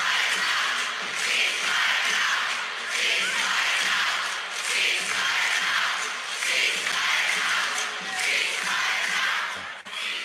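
A large crowd of protesters chanting in unison, the chant swelling and falling in a steady rhythm about once every second and a half or so, heard through a phone's speaker.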